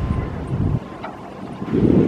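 Wind buffeting the camera microphone, a choppy low rumble that cuts off abruptly a little under a second in and swells again near the end.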